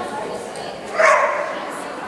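A dog barks once, a short bark about a second in.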